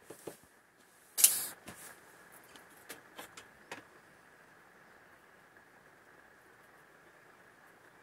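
A steel tape measure being pulled out: one short rasping burst about a second in, followed by a few faint clicks.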